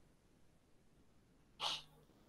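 A single short sneeze about a second and a half in, over otherwise very quiet room tone.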